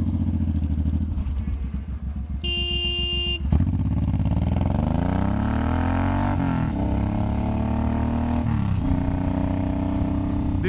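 Suzuki M109R's big V-twin idling with a low rumble, a horn honks once for about a second a few seconds in, then the engine pulls away, its pitch rising through the gears with upshifts near the middle and near the end.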